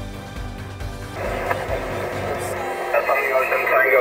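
Narrow-band, crackly single-sideband voice from a Yaesu FT-897 transceiver's speaker, receiving a station on the 40-metre band in lower sideband. It starts about a second in and grows louder, while music with a low beat fades out under it, its bass stopping nearly three seconds in.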